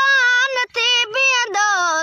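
A boy singing a Sindhi devotional song solo, with no instruments: long, wavering held notes with short breaks between them, the melody falling lower near the end.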